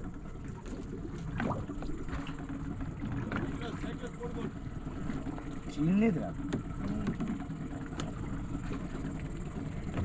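Low, steady rumble of a small fishing boat at sea, with men's voices calling out now and then; the loudest call comes about six seconds in.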